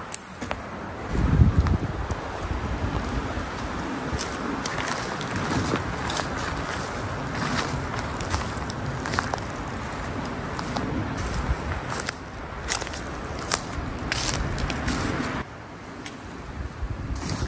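Strong wind gusting through the trees and buffeting the microphone, with a loud low rumble about a second in. Scattered sharp crackles and snaps run throughout.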